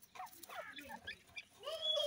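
Grey francolins giving soft, short calls, several in quick succession. A louder, longer call starts near the end.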